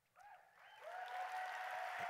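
Audience applause that swells up from nothing and is in full, steady clapping by about a second in, with one long held cheer rising over it.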